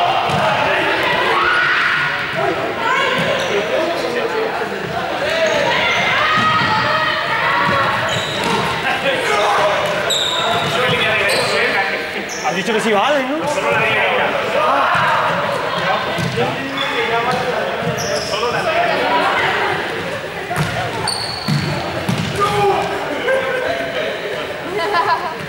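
A group of students talking and calling out over one another in a large echoing sports hall, with running footsteps and a few brief sneaker squeaks on the court floor as they play a chasing game.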